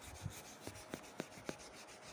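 A marker whiteboard being wiped with an eraser: faint rubbing with a few light taps.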